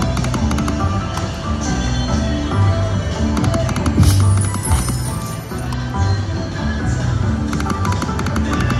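Triple Coin Treasure video slot machine playing its game music and reel sound effects: a melody over a bass beat with quick ticking, and a short bright whoosh about four seconds in.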